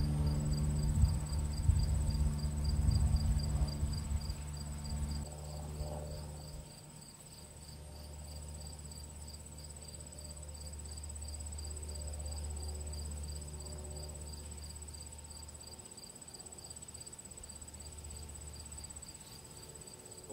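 Crickets chirring steadily: one high continuous trill and a lower, evenly pulsing one. A low rumble is loudest in the first five seconds and drops away about six or seven seconds in, coming back more faintly later.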